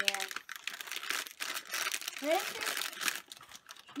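A plastic foil blind-bag packet of a Hairdorables Pets toy crinkling and crackling in a child's hands as it is handled and worked open.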